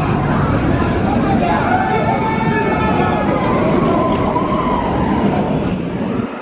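Intamin launch roller coaster train running along its steel track: a loud, steady rumble with wavering high tones over it, easing off just after the end.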